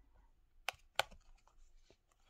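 Large, brand-new oracle cards being slid apart by hand: two sharp card clicks a little under a second in and a lighter one near the end, as the new cards stick together.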